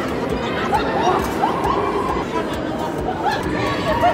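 Crowd babble: many overlapping voices with short, high calls and shouts over a steady background din.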